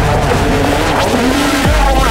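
Dramatic TV-serial background score with swooping, gliding sound effects over a deep low drone, with a sharp falling sweep near the end.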